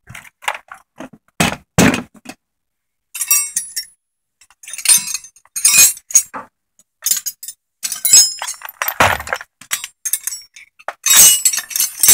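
Steel sockets and wrenches clinking and clattering in a toolbox as a hand rummages through them, in a string of irregular loud clatters.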